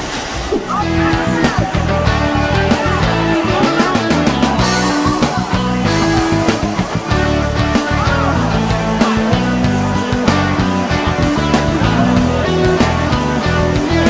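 Background music with a repeating bass line and sustained melody notes, coming in a little under a second in.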